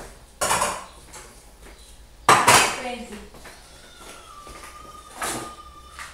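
Metal pots, lids and utensils clattering on a gas stovetop as they are handled, in three separate clangs: about half a second in, just past two seconds (the loudest), and about five seconds in.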